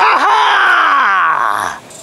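A man's loud, drawn-out wordless yell that slides steadily down in pitch and breaks off shortly before the end.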